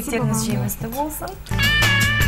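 Brief voices in the studio, then about a second and a half in a TV channel ident jingle cuts in: loud music with a steady bass note and a bright held chord.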